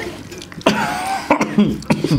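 A person coughing and clearing their throat in several short, loud bursts, starting a little over half a second in.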